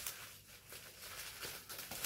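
Faint crinkling and rustling of plastic bubble wrap being handled and unwrapped, a few soft scattered crackles.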